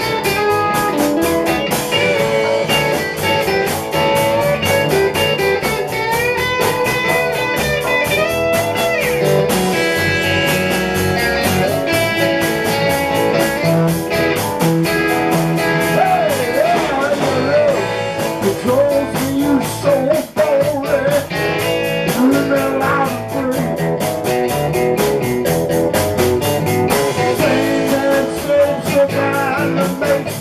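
Live rock band playing an instrumental break: electric guitars over a drum kit with steady cymbal and drum strokes, a lead guitar line with bent, sliding notes on top.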